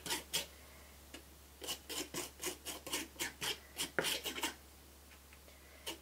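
Metal palette knife scraping tinted texture crackle paste thinly across a painted wooden plaque: a quick series of short strokes, about four a second, that stops about a second and a half before the end.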